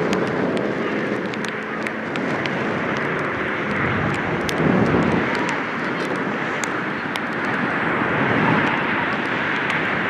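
A steady rushing noise that swells a little about halfway through and again near the end, with faint voices and a few sharp ticks over it.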